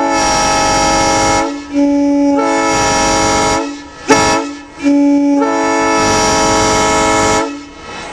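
Nathan M3 three-chime locomotive air horn blowing a series of long blasts of its chord. Each blast opens on a single low note before the other chimes join in. A short, sharp burst about four seconds in is the loudest moment.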